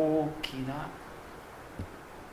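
A man's voice briefly at the start and again just after half a second, with a sharp click about half a second in and a soft low thump near the end; between them, quiet room tone.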